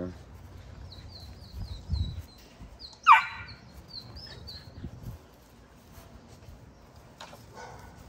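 A small bird chirping in a quick run of short high notes for about four seconds, with one short, loud squeal about three seconds in.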